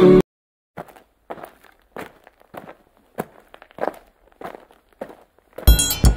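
Footsteps at an even walking pace, about eight steps, each one soft and separate. A sung line cuts off just at the start, and loud music with a drum beat comes in near the end.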